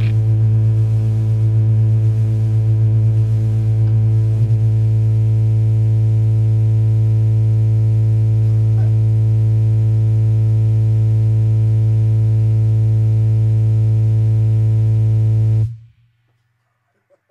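A distorted low note from the band's amplified instruments, held as a steady drone with its overtones for about fifteen seconds at the close of a metal song, then cut off suddenly near the end.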